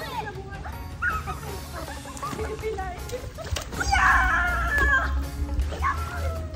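Children's voices calling and shouting as they play in a pool, over light background music; one loud, high, drawn-out shout comes about four seconds in.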